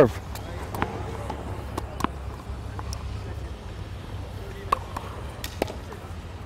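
Tennis serve on a hard court: a few light knocks of the ball being bounced, then a sharper crack of the racket striking the ball, the loudest about three-quarters of the way through, over a steady low rumble.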